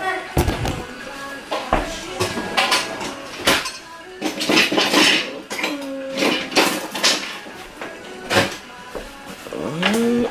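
Kitchen clatter of metal utensils against a nonstick frying pan and dishes: a string of irregular clicks, clinks and short scrapes.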